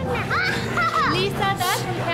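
A young girl's high-pitched voice in short phrases that bend up and down, over a low, steady music drone.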